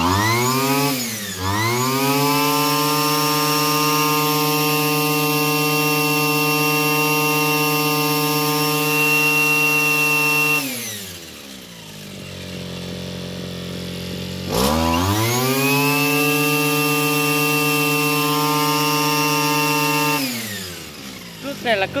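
Hitachi CG33 33cc two-stroke brush cutter engine revved to full throttle and held for about ten seconds, dropping to idle, then revved and held high again for about six seconds before falling back to idle.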